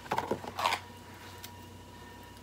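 Short clicks and rustles of a razor kit's plastic-and-cardboard packaging being handled in roughly the first second, then quiet room tone with a faint steady hum.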